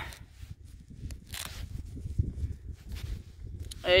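Wind rumbling on the microphone, with faint rustling and small clicks as the camera is handled.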